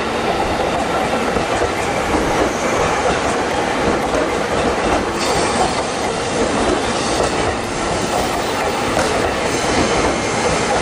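A JR 211 series electric multiple unit rolling past at close range: a loud, steady rumble of wheels on rail. A faint high wheel squeal joins in about halfway through.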